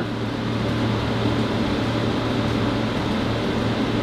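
Steady hum and hiss of room air conditioning, even and unchanging.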